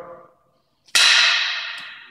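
One loud, sharp crack of a stick-fighting cane strike about a second in, its sound dying away over about a second.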